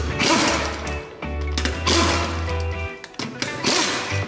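Short bursts from a pneumatic impact wrench with a 17 mm socket working a car's wheel bolts, three times about a second and a half apart, over background music with a steady bass line.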